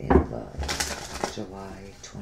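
A tarot card deck being handled: a knock as the deck is tapped down on the table, then a papery rustle of the cards being shuffled, with another click in the middle.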